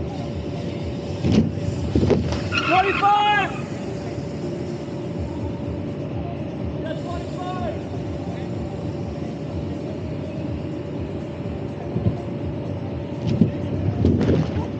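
Air blower of an inflatable airbag lander running steadily with a constant hum. BMX riders' landings on the bag make sharp thuds, a couple early on and several near the end, with brief shouts after the first landing and again around seven seconds in.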